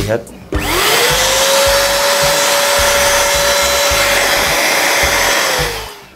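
Bolde Super Hoover portable vacuum cleaner running in blower (hair-dryer) mode, pushing air out through the pipe fitted to its exhaust port. The motor is switched on about half a second in, and its whine climbs quickly to a steady pitch over a loud rush of air. It winds down and falls in pitch just before the end.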